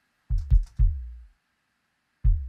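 Electronic kick drum played solo: three quick hits within the first second, each a sharp click over a deep, decaying thump. The kick runs through a transient-shaping rack that saturates only its top end, bringing out the click so it cuts through a mix.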